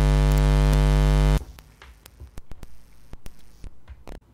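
Loud electrical mains hum, a buzz with many overtones, for about a second and a half, cutting off abruptly and followed by scattered clicks and crackles. It is the sound of a faulty connection in the studio's phone hookup, which is blamed on a bad contact.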